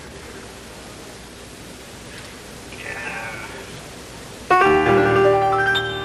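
Steady tape and room hiss, then about four and a half seconds in a piano comes in with a loud chord that rings on, a few more notes struck near the end: the opening of a jazz piano piece.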